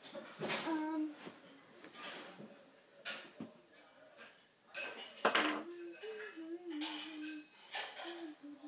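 Small hard objects clinking and knocking as things on a wooden desk are rummaged through by hand, in a string of irregular sharp clicks and clatters.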